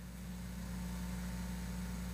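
Steady low electrical-sounding hum with a faint even hiss, swelling slightly: background room or sound-system noise.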